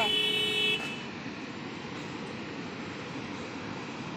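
Fast-flowing canal water rushing out through culverts under a bridge, a steady rush. A vehicle horn honks once, for under a second, at the start and is the loudest sound.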